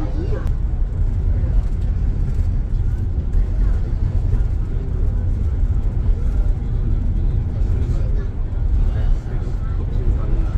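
Steady low rumble of a shuttle bus's engine and tyres at highway speed, heard from inside the cabin.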